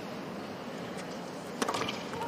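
Steady murmur of an indoor tennis arena crowd, then a few sharp knocks close together near the end from a tennis ball in play.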